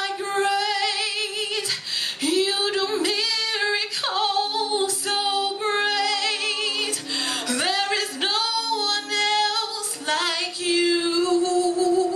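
A woman singing a gospel worship song into a handheld microphone, in long held notes with a wide vibrato, phrase after phrase with short breaths between. A steady lower accompanying note is held underneath for a few seconds in the middle.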